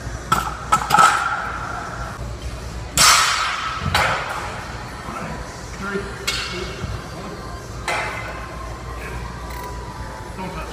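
A run of sharp metal clanks that ring out, about seven in all with the loudest about three seconds in: a loaded barbell and iron weight plates knocking against a steel bench-press rack, with voices around them.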